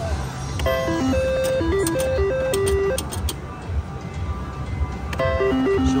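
An IGT Triple Stars reel slot machine plays its electronic spin tune of short stepped beeps twice, once from about a second in and again from about five seconds in, as the reels spin after each bet. A few sharp clicks fall during the first spin, over a low casino hum.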